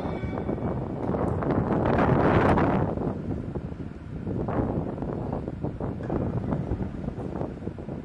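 Rushing, wind-like noise on the microphone with scattered small knocks and clatter, swelling loudest about two to three seconds in and then easing.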